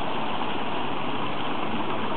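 Fountain water splashing steadily into its stone basin.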